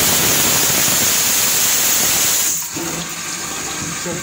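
Pakoras (gram-flour fritters) deep-frying in hot oil, a loud steady sizzle that cuts off abruptly about two and a half seconds in, leaving a quieter hiss.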